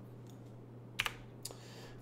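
A single sharp click of a computer keyboard key about a second in, then a fainter tick half a second later, over a quiet low steady hum.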